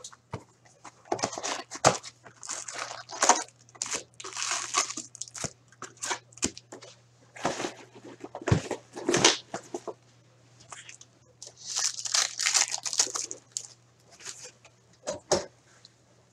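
Hands opening a cardboard hockey-card blaster box and handling its foil card packs: cardboard scraping and packs crinkling and rustling in irregular bursts, with a faint low hum underneath.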